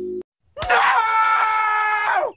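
Homer Simpson's cartoon voice giving one long, high-pitched scream. It rises at the start, holds for about a second and a half and falls away at the end. Just before it, a steady held tone cuts off suddenly, followed by a brief silence.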